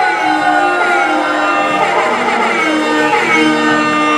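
Indie rock band playing: electric guitar and bass guitar holding ringing notes, with a few sliding pitches.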